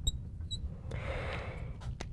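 Marker tip squeaking twice on a glass lightboard as the last letters are written, the second squeak about half a second in, then a soft hiss lasting about a second.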